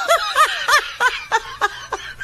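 Laughter in quick, high-pitched bursts, about three a second, growing weaker through the second second.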